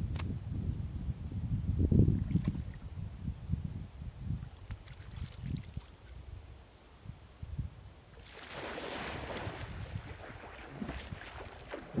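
Wind gusting on the microphone for the first several seconds, then water splashing as a swimmer wades into a lake and plunges in, with a sharper splash near the end.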